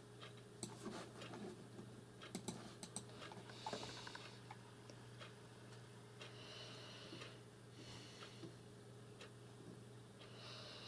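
Quiet room tone with a steady low hum, a few faint sharp clicks in the first three seconds, and several short soft hisses later on.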